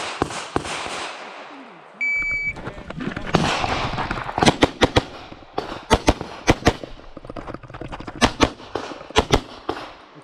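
Electronic shot timer's start beep, a short high tone about two seconds in, giving the start signal for the course of fire. From about four and a half seconds a semi-automatic pistol fires rapid shots, mostly in close pairs (double taps), as targets are engaged one after another.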